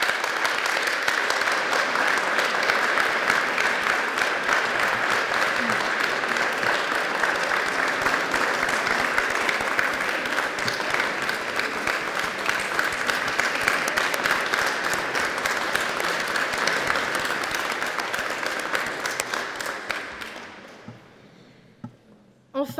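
A large seated audience applauding, a dense steady clapping that dies away near the end.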